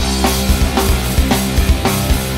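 Punk rock band playing an instrumental passage with no vocals: a drum kit keeps a steady beat of bass drum and snare under distorted electric guitars and bass.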